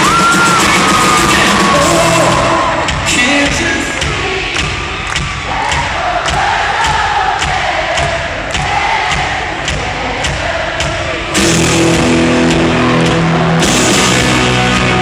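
Country-rock band playing live in an arena: a voice singing over guitar and a steady drum beat. About four seconds in the band drops back to a quieter stretch of drums and singing, then comes back in full just after eleven seconds.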